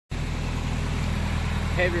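A car engine idling steadily, a low, even running sound with a regular pulse.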